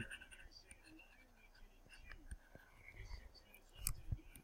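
Near silence, with very faint breathy sounds from a person and a few soft clicks.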